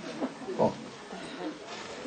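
A man's short, throaty "oh" in a pause of speech, over faint room noise.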